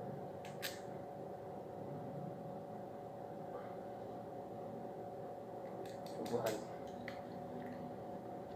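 A steady background hum, with a few faint clicks and knocks from an air rifle being handled and shouldered: two clicks about half a second in and a small cluster around six seconds.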